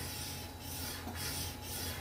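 Soft, uneven rubbing and scraping of a scoring stylus drawn along a scoreboard groove, pressing a score line into thick white cardstock.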